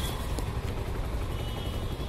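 Steady low rumble of a vehicle running, with no distinct events.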